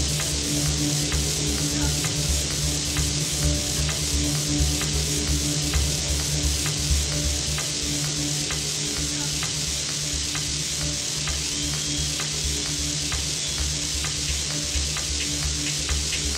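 Techno played over a festival sound system: a steady four-on-the-floor beat at about two strokes a second under sustained bass notes, with a loud hissing noise layer over the top.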